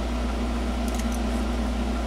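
Steady low machine hum of workshop room noise, with a couple of faint ticks about a second in.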